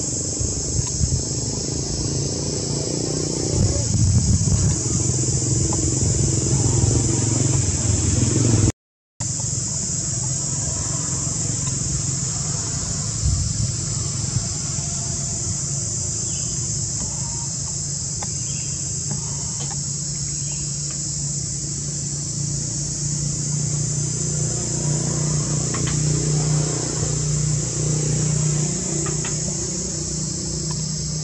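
Steady high-pitched insect chorus over a low rumble. The sound cuts out for an instant about nine seconds in.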